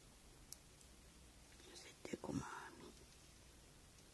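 Near silence with room tone, broken by a brief soft whisper about two seconds in.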